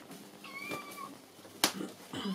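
A kitten mewing once, a thin, high, steady call of a little over half a second, followed by a single sharp click near the end.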